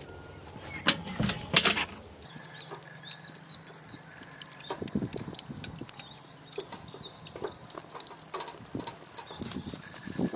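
Lid lifted off a Weber kettle barbecue and beef ribs laid on its metal cooking grate: scattered knocks and clinks of metal, the loudest about a second in.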